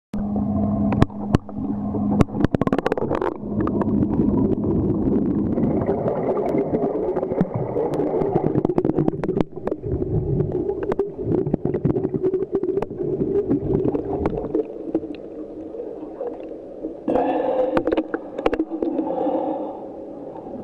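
Muffled water sound recorded underwater while swimming in a flooded cave, with gurgling and many sharp clicks and knocks. Near the end a steady pitched hum with several overtones comes in.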